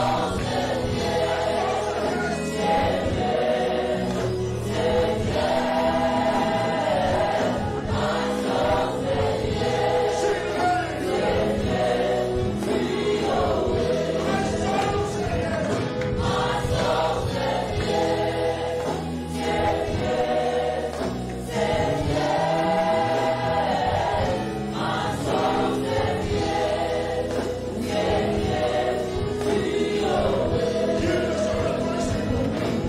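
A church congregation singing a gospel worship song together, with a live band and drum kit playing along.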